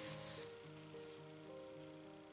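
Soft background music, a slow melody of held notes. In the first half-second there is a brief rasping rustle of bulky yarn being drawn through crochet stitches.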